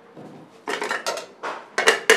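Ceramic plates and metal pots clattering as they are handled and stacked at a kitchen sink: a quick run of clinks and knocks about two-thirds of a second in, another clink a little later, and a louder clatter near the end.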